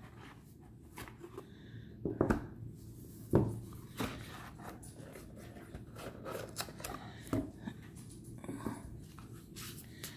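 Light handling sounds of a new oracle card deck and its cardboard box: the card stack sliding out and being turned in the hands, with scraping and soft taps and a few sharper clicks along the way.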